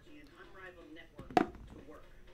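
A single sharp knock on the tabletop about one and a half seconds in, from a die being thrown onto the mat, over faint muffled talk.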